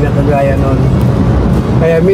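Steady low rumble of a moving car's engine and road noise heard inside the cabin, with a few faint spoken syllables about half a second in.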